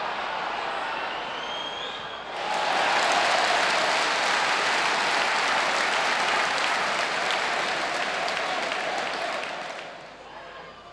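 Football stadium crowd murmuring, then bursting into loud cheering and applause about two seconds in. The noise holds for several seconds before dying away near the end.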